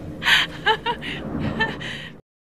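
A person's voice in sharp breathy gasps with a few short voiced syllables between them.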